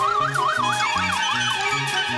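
Cartoon score with a bouncing bass line, over which a high wobbling whistle-like tone rises and warbles up and down, siren-like, for about a second and a half before dying away into held notes.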